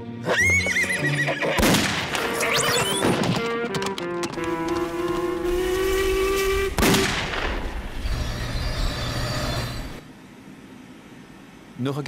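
Cartoon soundtrack music with sound effects laid over it: sharp hits about one and a half seconds in and again near seven seconds, the second with a falling swoop. A long held note runs through the middle.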